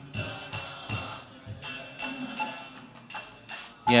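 Small hand cymbals (kartals) struck in a steady rhythm, about two to three strikes a second, each ringing briefly, as accompaniment to a devotional kirtan.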